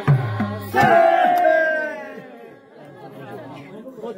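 A last hand-drum beat ends a folk song. About a second in, a loud high whoop rings out and falls in pitch over about a second. Quieter group chatter follows.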